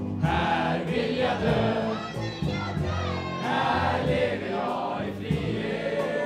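A crowd of young men and women singing a patriotic song together in unison, phrase by phrase.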